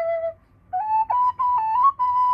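Thai khlui, a wooden duct flute, playing a luk thung-style melody. A held note breaks off about a third of a second in for a brief breath. The tune then resumes higher with quick ornamented note changes.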